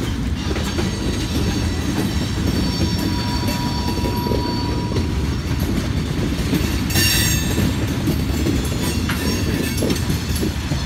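Freight train tank cars and an autorack rolling past, a steady rumble of steel wheels on rail. A thin high wheel squeal comes in for a couple of seconds midway, and a short, sharper squeal sounds about seven seconds in.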